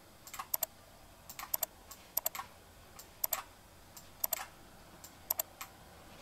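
Computer mouse button clicking: press-and-release pairs about once a second while the map is dragged across the screen.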